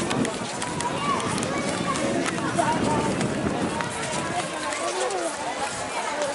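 Busy pedestrian street ambience: voices of several passers-by and café customers talking, with walking footsteps and scattered light clicks.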